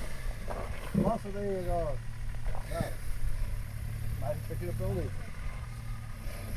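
Range Rover P38's engine running low and steady at low revs as it crawls over rocks, with a person's voice calling out twice over it.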